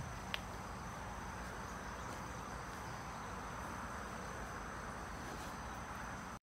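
Steady outdoor chorus of insects droning in woodland, with thin continuous high-pitched tones, unchanging throughout. A single short click sounds about a third of a second in.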